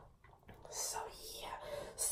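A woman's voice, faint and whispered, under her breath between sentences.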